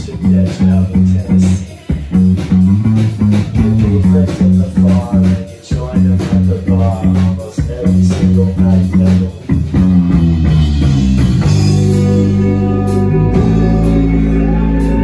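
Live rock band with electric guitar and bass playing a riff of short repeated low notes broken by brief gaps. About ten seconds in, the band swells into sustained chords with cymbal hits.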